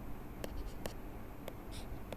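Stylus on a tablet screen, drawing dots and short strokes: three sharp taps with a brief faint scratch of writing near the end.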